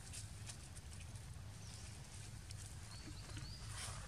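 Faint outdoor ambience with scattered light clicks and rustles, and a few short, high chirps about three seconds in.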